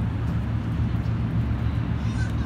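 Steady low rumble of outdoor city ambience, with no distinct events standing out.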